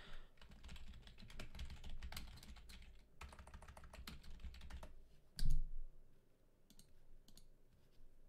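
Typing on a computer keyboard: a run of quick key clicks over the first five seconds, then a single louder thump about five and a half seconds in, followed by a few scattered key clicks.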